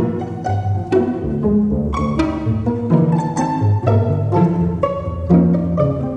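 String orchestra playing: sharp plucked notes every half second or so over low sustained cello and double bass notes.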